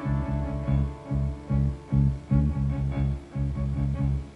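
Live rock band playing an instrumental passage: electric bass driving a pulsing run of short low notes, about three a second, under sustained keyboard tones.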